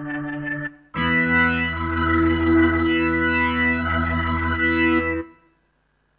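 Roland GR-33 guitar synthesizer preset played from a guitar: a sustained note that stops about half a second in, then a louder sustained chord held for about four seconds that cuts off suddenly.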